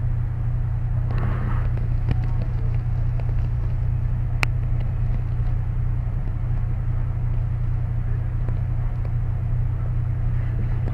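Steady low rumble of a car engine idling, with one brief sharp click about four and a half seconds in.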